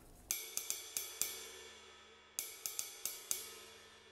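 A cymbal struck with a stick in two quick groups of five, each stroke ringing briefly and dying away. Thin Meinl cymbal sustain control magnets are clamped near the bell: they deaden it just a little, and a little wash still sustains.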